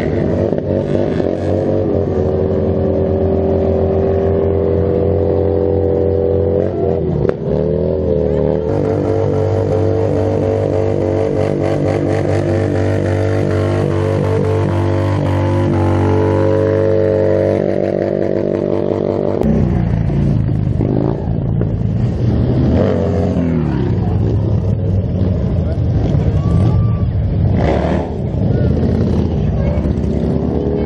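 Motorcycle engine held at high revs through a long burnout, the rear tyre spinning on the pavement, its pitch steady with small wavers. About twenty seconds in the steady note breaks off into rougher revving that rises and falls.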